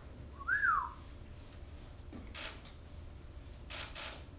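A person whistling once, a short whistle of about half a second that rises and then falls in pitch, less than a second in. Two faint, brief noises follow later.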